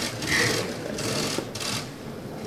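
Camera shutters firing in quick bursts: about three short runs of rapid clicking.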